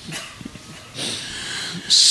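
A man weeping into a close microphone: short, broken, breathy sobs, then a longer gasping breath from about a second in.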